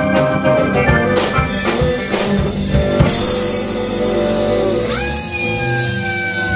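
Live rock band playing: drum kit, electric guitar, pedal steel guitar and keyboard. The drumming stops about three seconds in while held notes ring on, and a sliding tone rises and holds near the end.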